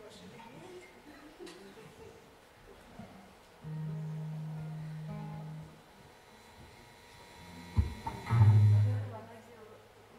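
Acoustic guitar being tuned: a single low string is plucked and rings for about two seconds, then a few seconds later another, lower string is plucked harder and rings out.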